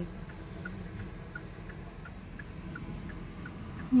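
A car's turn-signal indicator ticking steadily, about three clicks a second, over the low hum of the car cabin while driving.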